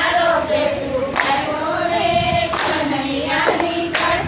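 A group of women singing a Gujarati devotional bhajan together, clapping their hands in time about once a second.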